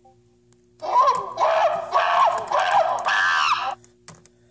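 A child's voice making wordless, high-pitched vocal sounds, about five drawn-out notes in a row that bend in pitch, starting about a second in.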